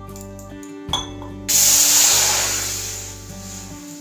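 A cup of water poured into a hot kadhai on a gas stove, hissing loudly as it hits the pan about one and a half seconds in, then dying away over the next two seconds. Background music plays throughout.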